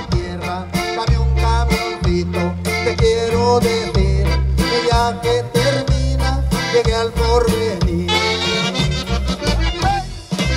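Live regional Mexican band music played through a PA: accordion and saxophone over electric bass, guitars and a steady drum beat.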